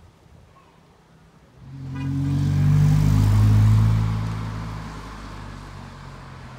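A motor vehicle passing close by: its engine and road noise swell over about two seconds, peak midway, then fade away.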